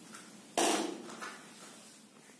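A door banging shut once, about half a second in, the bang dying away over half a second in the room.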